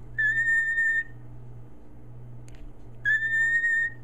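Cockatiel whistling two short, steady single notes about three seconds apart, each lasting under a second. The notes are its answer to a question, counted out one by one.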